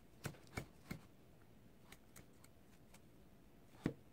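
A pink plastic comb being drawn through a doll's synthetic hair. There are three short, sharp strokes in the first second, a few faint ticks after them, and one louder stroke near the end.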